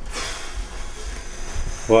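Steady background hiss of room noise. A man's voice starts right at the end.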